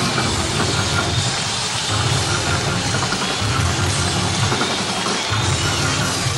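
Live rock band playing, with bass and drums, heard through a room-sounding audience tape of a concert hall.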